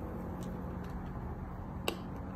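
Faint chewing and mouth clicks from a person eating a bite of soft peach cake, over a low steady hum; one sharper click near the end.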